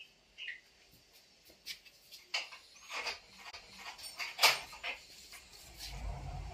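A door lock being worked and a wooden door opened: a scatter of sharp metal clicks and knocks, the loudest about four and a half seconds in, with a few faint high squeaks.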